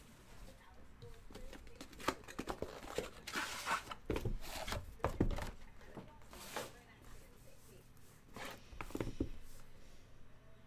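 Hands handling a trading-card box and its shrink-wrapped contents: cardboard rubbing and tapping, and plastic wrap crinkling and tearing in irregular bursts, with a few sharp ticks.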